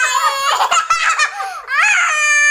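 A young boy and a woman laughing loudly together, the boy's laughter high-pitched.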